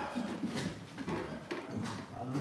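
Faint murmur of voices in a room, with two soft clicks, about half a second in and near the end.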